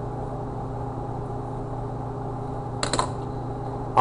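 A steady low machine hum holding a few even tones, with a brief short noise just before three seconds in.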